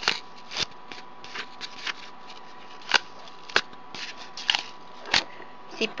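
Embroidery threads being pulled out of and snapped into the slits of a cardboard braiding disk: light rustling of cardboard and thread with about six sharp, separate clicks.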